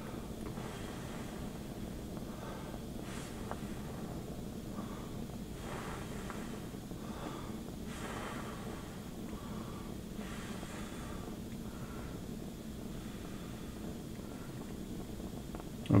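A person breathing quietly through the nose, with faint puffs every second or two, over a steady low background hiss.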